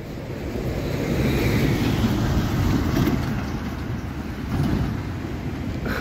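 A road vehicle passing on the street: a low rumble of engine and tyre noise that swells over the first couple of seconds and then eases off.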